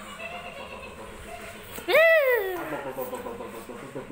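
A baby lets out one loud high-pitched squeal about two seconds in, rising and then falling in pitch over about half a second.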